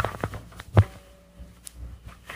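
A few short knocks and clicks, the loudest just under a second in, over a low steady hum on an old home tape recording.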